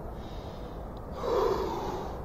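A man's short, audible breath out about a second and a half in, over a steady low rumble.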